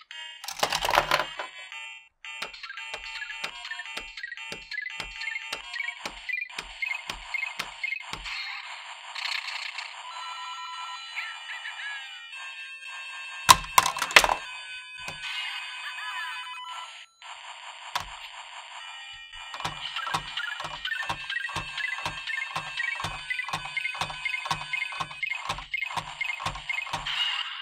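Electronic video-game tunes and beeping sound effects from a LEGO Super Mario interactive figure's small speaker, with a steady low beat under them for much of the time. Loud plastic clacks about a second in and again around the middle.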